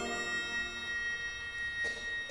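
Concert wind band in a soft passage just after a loud chord is cut off: a few steady high tones ring on quietly, with metallic percussion in use, until the winds re-enter.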